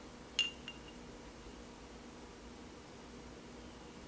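Metal tweezers clinking against the inside of a glass jar of liquid flux: one sharp clink about half a second in and a fainter one just after, then faint room tone.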